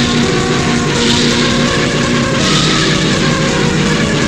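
Raw, lo-fi black metal song: distorted guitars with sustained chords changing every second or so over rapid drumming, blurred into one dense, unbroken wall of sound.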